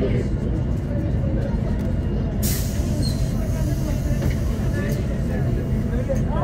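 Inside a 2007 Solaris Urbino 12 III city bus, its DAF PR183 diesel engine runs with a steady low drone. About two and a half seconds in, a sudden hiss of compressed air vents from the bus's air system, lasting a couple of seconds before fading.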